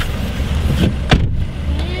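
Car engine idling with a steady low rumble, and a car door slamming shut about a second in.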